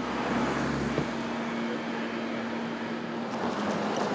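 City street traffic: vehicles driving through an intersection, with a steady engine hum for a couple of seconds in the middle.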